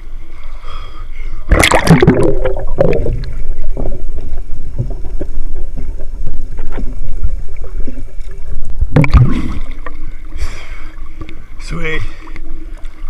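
Snorkeling under water: a loud splash and breath about a second and a half in as the camera goes under, then a muffled underwater rumble with small clicks and gurgles of exhaled bubbles, and another loud splash near nine seconds as it breaks the surface.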